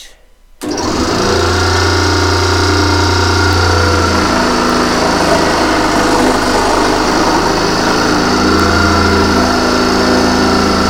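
Small benchtop scroll saw switched on about half a second in, then running steadily as it saws a thin wooden strip; its low motor hum strengthens and eases twice.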